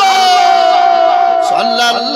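A man's voice through a public-address system holding one long chanted note that slowly falls in pitch, breaking off about a second and a half in before the wavering melodic recitation resumes.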